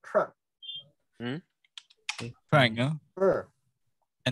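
A few computer keyboard keystrokes clicking about two seconds in, between short bursts of a person's voice speaking.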